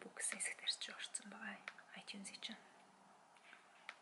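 A woman speaking softly, close to a whisper, through the first half, then a couple of faint clicks.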